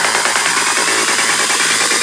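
Psytrance break with the kick drum and bassline dropped out, leaving a loud, dense hissing synth noise layer over a fast buzzing synth pattern.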